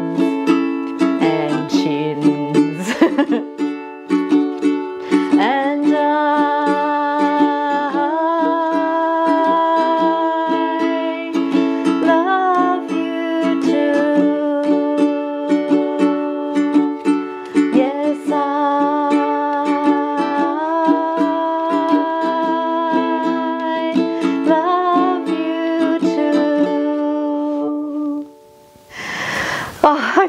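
Ukulele strummed in a steady rhythm with a woman's voice carrying the melody along without clear words. The playing stops about two seconds before the end, followed by a brief noisy rustle.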